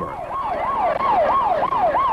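An emergency-vehicle siren in a fast yelp: its pitch falls and jumps back up again and again, about three times a second.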